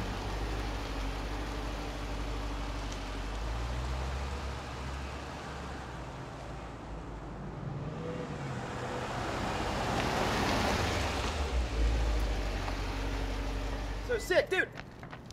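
A Jeep Grand Cherokee's engine pulling away from the curb and fading into street noise, then a vehicle rising and falling as it drives past about ten seconds in.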